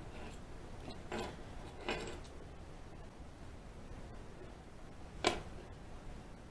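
Faint metallic scrapes and clicks of a lock pick and tension wrench working in a padlock's keyway: two short scrapes about one and two seconds in, and a sharper click a little after five seconds.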